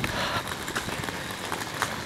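Footsteps of a person walking on a road, faint clicks about half a second apart, over a steady outdoor hiss.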